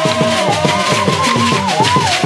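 Fast ngoma drumming, many quick low strokes, under long held high notes that waver slightly and slide down near the end.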